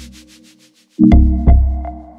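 Background electronic music. A rhythmic high hiss pulses in the first second, then deep bass kicks land about a second in and again half a second later, over a steady synth tone.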